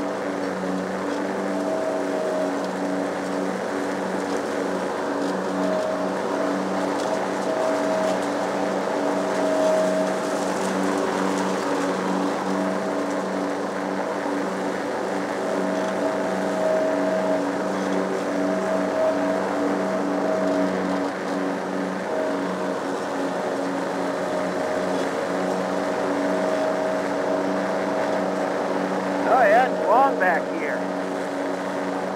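Lawn mower engine running steadily at an even speed while mowing grass.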